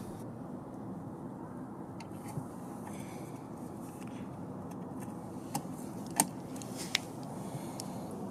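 Steady outdoor background hum with a few small, sharp clicks about five and a half to seven seconds in, from fingers handling a cable connector on the telescope's focuser housing.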